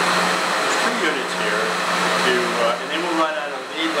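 Air handler running: a steady rush of moving air with a constant low hum underneath, loud enough to muddy the speech recorded over it.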